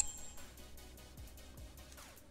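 Faint background music, with the tail of a high electronic beep ringing out and fading in the first half second.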